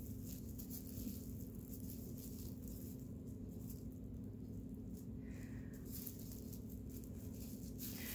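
Faint crinkling and rustling of plastic-bag yarn (plarn) as it is pulled through stitches with a crochet hook, over a steady low hum.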